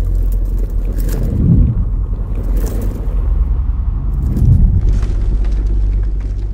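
Cinematic intro sound design: a deep, steady rumble with two swelling booms, about a second and a half in and again near four and a half seconds, and brief hissing sweeps over the top.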